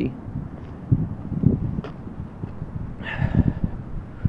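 Wind buffeting the microphone outdoors, an uneven low rumble with short gusts, and a brief soft higher sound about three seconds in.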